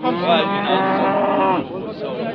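Cattle mooing: one long, steady moo lasting about a second and a half.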